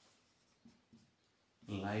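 Faint taps and scratches of hand-writing on a board, between spoken words.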